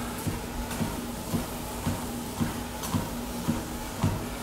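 Cardio exercise machine running with a steady low hum and soft knocks about twice a second.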